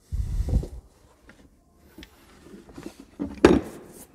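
Parts being handled on a workbench. A low rumble with thuds comes first, then a few faint clicks, and a sharp knock about three and a half seconds in.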